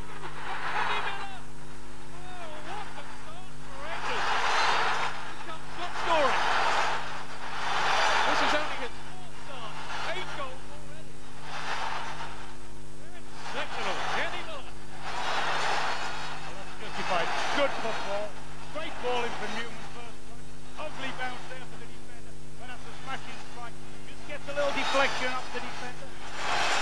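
Large football stadium crowd cheering and singing after a goal, the noise swelling and falling in waves every couple of seconds, over a steady low electrical hum from the old recording.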